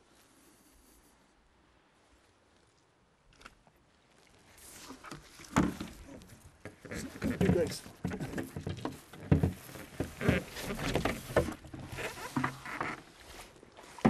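Starting about four seconds in, a stand-up paddleboard is lifted and carried, giving irregular knocks and scuffs, then feet splash as they wade into shallow water.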